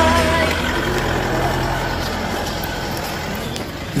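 Music fades out about half a second in, leaving a steady vehicle engine running with a noisy rumble that slowly gets quieter.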